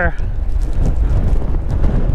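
Strong wind buffeting the microphone: a loud, steady low rumble with a thin hiss above it.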